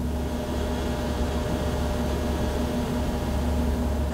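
Steady machinery hum of a runoff water-treatment plant: a strong low drone with a few steady tones above it and an even hiss, unchanging throughout.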